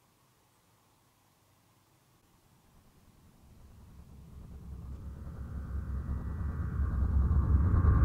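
Near silence, then from about three seconds in a low, rumbling drone swells steadily louder: a horror-style riser sound effect laid over the footage.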